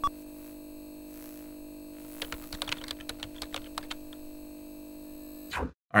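Computer keyboard typing: an irregular run of key clicks from about two to four seconds in, over a steady electrical hum that cuts off shortly before the end.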